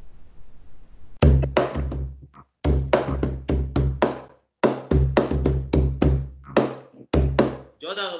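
Drumsticks beating a hard-shell plastic suitcase as a drum, starting about a second in: quick rhythmic phrases of sharp strikes, each with a deep, boomy ring from the hollow shell, broken by short pauses.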